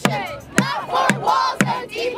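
Crowd of protesters chanting and shouting in unison, with an orange plastic bucket played as a drum, struck with a stick about twice a second.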